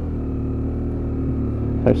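BMW F800's parallel-twin engine running steadily at a light, even cruise, its note neither rising nor falling.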